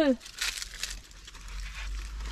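Leaves and stems of garden herbs rustling as a hand pushes through them, a few soft crinkly brushes in the first second that then die down.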